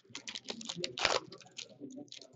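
Foil wrapper of a 2015-16 Upper Deck Series One hockey card pack crinkling as it is handled and opened, with cards slid out. A rapid run of dry crackles and rustles, loudest about a second in.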